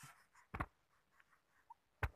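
A quiet room with one short, sharp click about half a second in.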